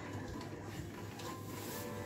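Steady low hum of room ambience with a faint short tone about a second and a half in.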